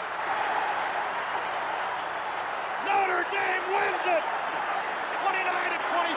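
A big stadium crowd cheering in a steady roar, celebrating a last-second game-winning field goal. From about three seconds in, a man's voice calls out over the noise.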